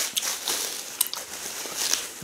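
Plastic cling film crinkling and crackling as it is peeled off a ball of fufu, with a couple of sharp crackles about a second in.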